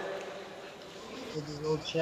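Faint, steady high-pitched insect buzzing that comes in about halfway through, with a man's voice starting alongside it near the end.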